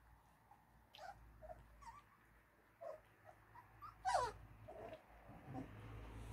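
25-day-old puppies giving a scatter of short, high-pitched yips and whines while playing. The loudest call comes about four seconds in and slides down in pitch.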